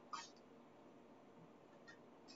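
Near silence, with one brief, faint high squeak that falls in pitch just after the start, and a couple of tiny clicks near the end.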